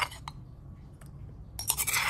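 Stainless steel spoon clinking and scraping against a granite mortar as it is worked through a dipping sauce: a few light clicks, then a louder cluster of clinks and scrapes near the end.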